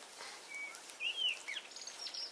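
Wild songbirds calling: a few separate short whistled notes over a faint hiss, one arching up and down in pitch about a second in.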